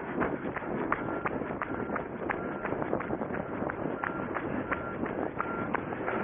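Running footsteps striking a gravel dirt track at a steady stride of about three steps a second. Some strides carry a brief high squeak.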